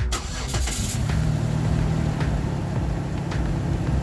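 Dodge Nitro's V6 engine cranking and catching in the first second, then settling into a steady idle.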